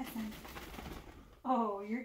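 A dog burrowing and squirming under a fleece comforter, fabric rustling for over a second, followed near the end by a short pitched vocal sound.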